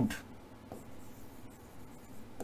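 A pen writing on an interactive whiteboard: faint strokes across the surface with a light tap about two-thirds of a second in.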